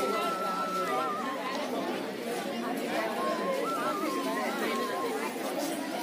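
Crowd chatter: many people talking at once, with a long held high tone over the voices for the first second or so and a wavering one again around the middle.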